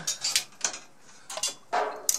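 Metal mixer housing parts and screws being handled on a workbench: a series of separate sharp clicks and clinks.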